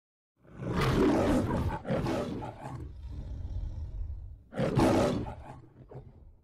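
The MGM logo's lion roar: two roars in quick succession, a quieter low growl, then a third roar about four and a half seconds in that fades away.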